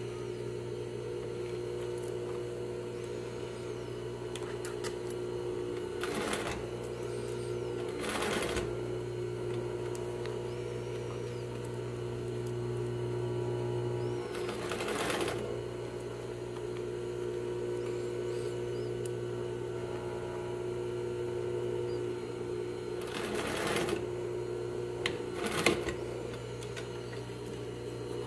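Sewing machine running steadily as it sews an understitch along a seam, a continuous motor hum, with a few brief noises at irregular moments.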